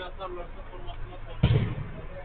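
A single loud thump of a football being struck about one and a half seconds in, with a short ring-out after it, over faint distant voices.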